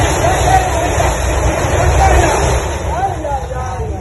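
Low rumble of a two-storey house collapsing, with excited onlookers' voices over it; the rumble eases after about two and a half seconds.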